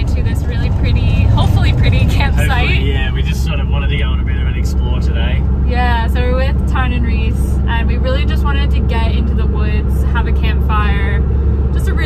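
Steady engine and road rumble inside a moving campervan's cabin, running under talking.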